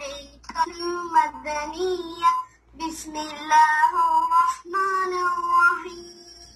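A young child singing in long, held notes, in three phrases with short breaks between them, heard over a video call.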